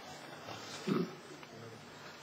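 A man's brief low "hmm" about a second in, against quiet room tone.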